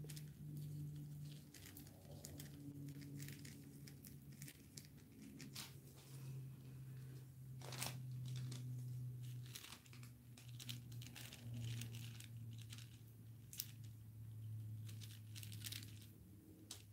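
Faint crinkling and scattered clicks of a plastic drop sheet and nitrile glove as a gloved hand works wet resin along the edges of a poured canvas, over a faint low hum that shifts in pitch every second or two.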